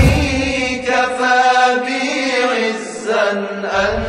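A man chanting an Arabic supplication in long, drawn-out melodic notes, over a deep low backing that swells near the start and again near the end.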